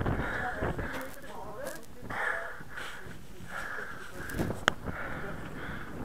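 Indistinct, distant voices, with a single sharp click a little before the end.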